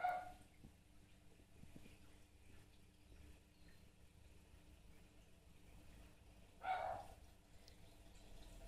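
Two brief pitched calls, one right at the start and one near the end, over a faint steady hum.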